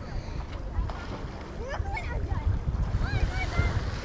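Wind noise on the microphone over small waves lapping at a sandy shoreline.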